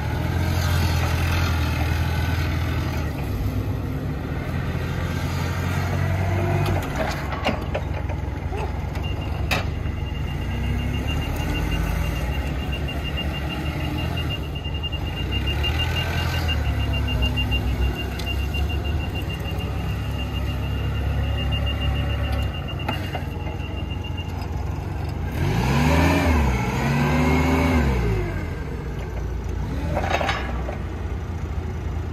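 Nissan 3,000 lb LP (propane) forklift engine running as the truck is driven, with its fast-pulsing backup alarm beeping for about fifteen seconds in the middle. Near the end the engine revs up and down twice while the mast raises the forks.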